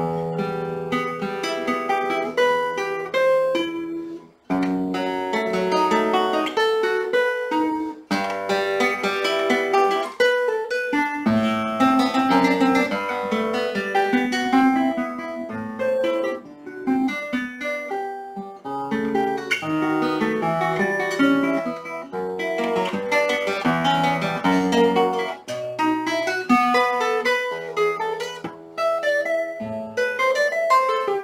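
Solo nylon-string classical guitar played fingerstyle, a Baroque fantasia of running plucked notes and chords, starting suddenly out of silence, with short breaks about four and eight seconds in.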